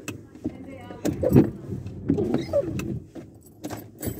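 Knocks and rustling from a phone being handled and set up on a car dashboard, the loudest knock a little over a second in, with some low muttering around the middle.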